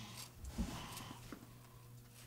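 Scissors snipping through craft felt: a few faint short cuts, the first about half a second in, over a low steady hum.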